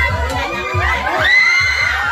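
Crowd shouting and cheering over budots dance music with a steady thumping bass beat; one long, high held shout rises above it near the end.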